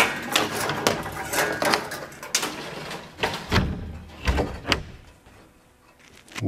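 A wooden shipping crate being opened by hand: a string of sharp clicks and knocks from the lid and its fittings, with two heavier thumps past the middle.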